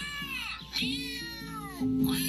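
Two rising-and-falling calls from a cartoon parrot, voiced as an animal cry, one after the other over background music, heard through laptop speakers.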